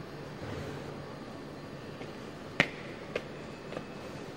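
Footsteps on steel stair treads: three sharp clicks about half a second apart, the first the loudest, over a steady low hum.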